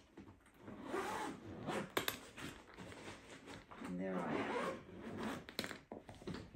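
The zipper of a hard-shell carry-on suitcase being pulled shut around the lid in several separate pulls.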